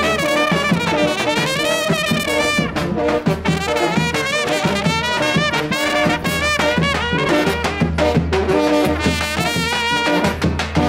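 Serbian village brass band playing while marching: trumpets carry a wavering, vibrato-laden melody over low brass horns, with drum beats underneath.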